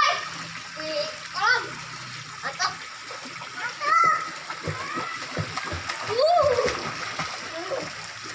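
Pool water splashing as two young boys paddle and kick, with children's voices calling out in short bursts several times.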